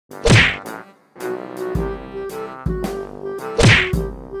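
Two loud whacks about three and a half seconds apart, over background music with a repeating note.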